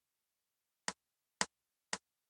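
Metronome woodblock count-in from Band-in-a-Box software: after a silent first second, three short woodblock clicks about half a second apart, counting in at 115 BPM before the backing rhythm starts.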